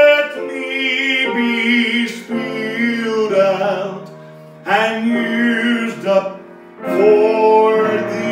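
A man singing a slow gospel song with vibrato, accompanied by digital piano chords. The voice comes in several sung phrases, dropping away briefly about four seconds in and again near the end while the piano holds.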